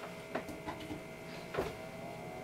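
Presto Dehydro electric food dehydrator being plugged in: a few small clicks and knocks of the plug going into the wall socket, and the dehydrator's fan motor starting to run with a steady hum.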